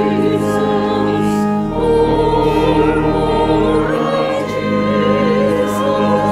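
Church choir and congregation singing a hymn with organ accompaniment, the voices wavering over steady held organ chords. A deep bass note comes in about two seconds in and drops out about two seconds later.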